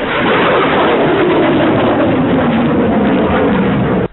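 Loud rushing noise of a surface-to-air missile's solid-fuel rocket motor in flight, with a tone in it that falls steadily in pitch. It cuts off suddenly at the end.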